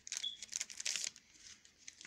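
A trading-card pack wrapper being handled and torn, crinkling in a dense run of rustles through the first second, then fainter.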